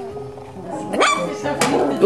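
Four-week-old poodle puppies yipping as they play-fight, with a couple of short, high yelps about a second in and just past halfway, over background music.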